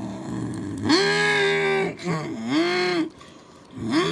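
A person's voice making engine noises for a toy monster truck: a long, steady held tone about a second in, then a shorter one that swoops up and back down, and another starting near the end.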